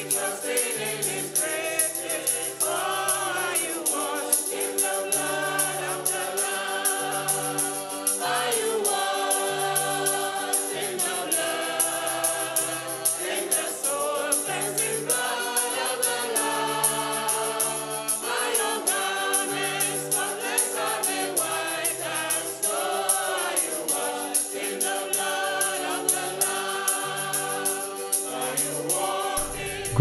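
Gospel choir music: several voices singing together over instrumental backing with a repeating bass line.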